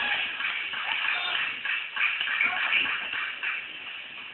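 Music playing under crowd voices, with the scuffling of wrestlers grappling on the ring mat.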